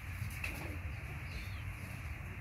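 Steady whir of an electric fan in a small room, with a faint, short low call about half a second in.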